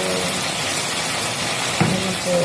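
Chicken and potatoes in adobo sauce sizzling steadily in a frying pan over a gas flame as they are stirred with a wooden spatula, with a single knock of the spatula near the end.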